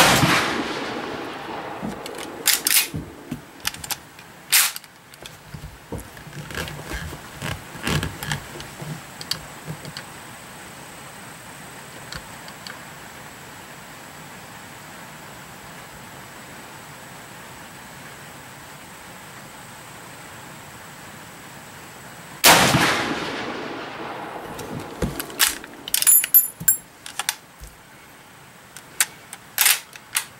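Two rifle shots from a lever-action .30-30, one right at the start and one about 22 seconds in, each ringing out briefly in the shooting shed. Each shot is followed by a few seconds of sharp metallic clicks as the lever is worked.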